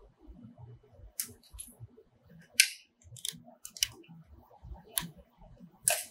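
Sharp plastic clicks and snaps, about six at irregular intervals, as pneumatic tubes are released from Camozzi push-in air fittings on a CNC router spindle's air cylinder. Faint handling noise runs between them.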